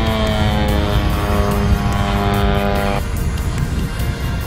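Engine of a large radio-controlled model warbird droning as it climbs away trailing smoke, mixed with background music; a held droning tone falls slightly in pitch and cuts off about three seconds in.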